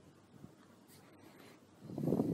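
Quiet room tone with faint rubbing noises. A short, muffled low sound starts near the end.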